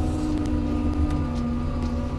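Cat K Series small wheel loader's diesel engine and hydrostatic drivetrain running steadily under throttle as the machine pulls away up the grade; one strand of its steady hum fades about a second in.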